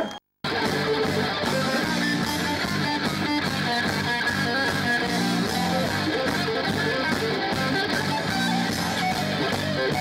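A rock band playing live at full volume: an electric guitar riff over drums. The music cuts in abruptly after a split-second of silence at the start.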